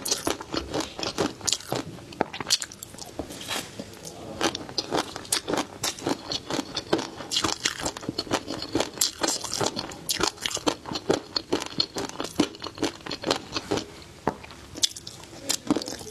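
Close-miked chewing of a mouthful of flying fish roe (tobiko), the tiny eggs crunching and popping as a dense run of small crackly clicks.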